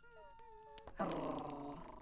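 Cartoon dogs whimpering with thin, wavering whines, then a louder, fuller animal cry starting about a second in.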